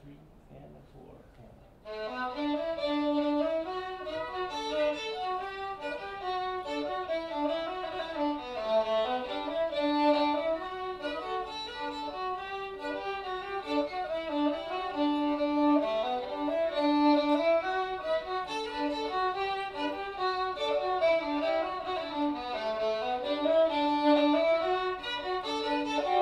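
Two fiddles start together about two seconds in and play a lively tune as a duet, with quick bowed notes.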